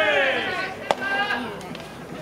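A voice calling out in long, drawn-out, high-pitched shouts, broken by a single sharp knock about a second in, followed by one more short call.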